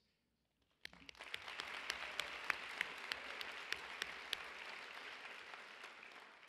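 Audience applauding, with a crowd of individual claps. It starts about a second in after a brief hush and eases off slightly toward the end.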